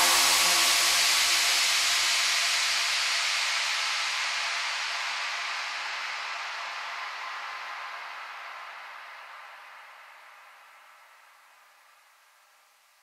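The outro of an electronic dance track: with the beat gone, a hissing synth noise wash with faint held notes fades slowly away, dying out about eleven seconds in.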